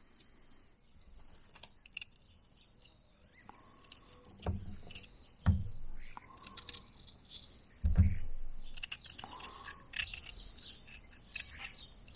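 Carving knife cutting and scraping bark off a stick in short, scattered strokes, with three dull knocks around the middle from the stick and knife being handled.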